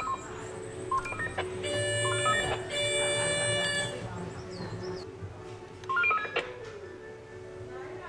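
Stanserhorn funicular car running on its rails: a steady, high-pitched metallic whine lasts about two seconds in the middle, over a lower steady hum that fades out a little later.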